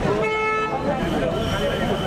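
A vehicle horn sounding once, a short steady honk of about half a second near the start, over people talking.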